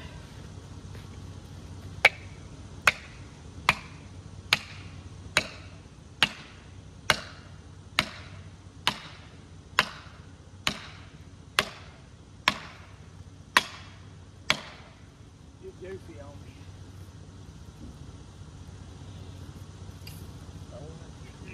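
Hammer driving felling wedges into the cut of a poplar being felled: about fifteen sharp, ringing strikes a little under a second apart, which then stop.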